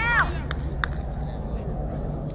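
A short shouted call at the start, then two sharp knocks, over a steady low rumble.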